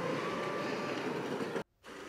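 Steady city street ambience, a continuous hum of traffic, cutting off suddenly about one and a half seconds in.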